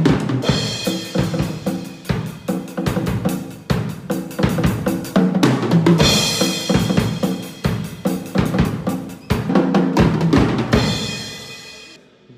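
A ddrum D2 acoustic drum kit played with sticks: a busy beat of rapid strikes on drums, with cymbals ringing out about half a second in, around six seconds in, and again near the end, after which the playing dies away.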